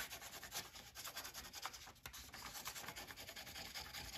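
Pencil scribbling back and forth on paper laid over a phone case to take a rubbing of its outline: a faint, scratchy rubbing of quick, repeated strokes.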